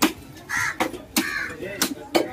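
A large knife chopping yellowfin tuna on a wooden stump block: four sharp strikes in two seconds. Short harsh cawing calls come between the strikes.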